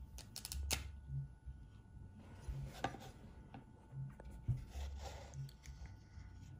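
A dry-erase marker is handled and uncapped on a hard tabletop, with a quick cluster of clicks in the first second. Scattered taps follow, and near the end the felt tip rubs on a plate.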